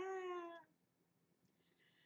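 A woman's drawn-out "ah", one held vowel about half a second long with its pitch falling slightly, voicing exasperation; then near silence.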